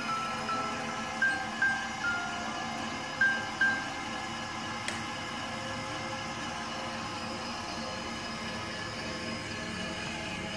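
A 20-note music box playing a punched paper strip, its plucked comb notes ringing for the first few seconds before the tune stops. A single click follows, then a steady mechanical hum.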